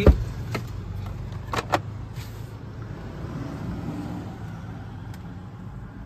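Car interior being handled: a thump just after the start, then a few light clicks, over a steady low hum in the cabin.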